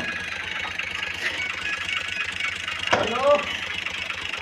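An engine running steadily at an even idle-like pace, with a brief voice call about three seconds in.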